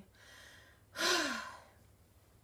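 A woman's heavy sigh: a faint breath in, then about a second in a loud, breathy exhale with the voice falling in pitch, trailing off.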